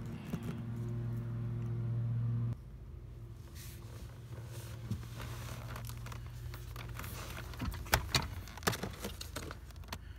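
A steady low hum that stops abruptly about two and a half seconds in. After that, light rustling and a few sharp plastic clicks near the eight-second mark as a car door's wiring harness and speaker plug connectors are handled.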